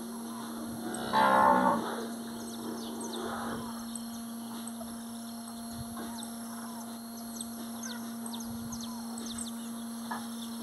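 Cattle bellowing in a corral: one loud bellow about a second in, then a fainter one a couple of seconds later.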